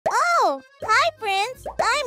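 A high-pitched, childlike cartoon voice exclaims "Oh!" with a rising and falling pitch, then starts "I am…". Soft children's music plays underneath.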